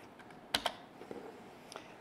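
A few clicks of laptop keys: two quick clicks about half a second in, then a couple of fainter ones.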